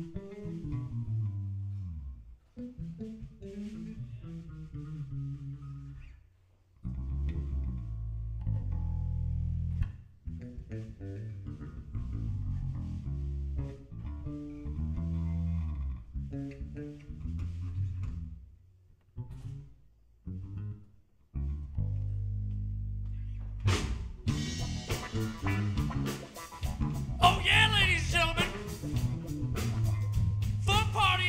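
Electric bass guitars playing funk phrases in turn, short bass lines broken by brief pauses. About 24 seconds in, the sound becomes louder and fuller, with cymbal-like hiss over the bass.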